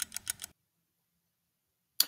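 Rapid, even ticking, about seven ticks a second, like an edited-in clock or countdown sound effect; it stops about half a second in, leaving dead silence.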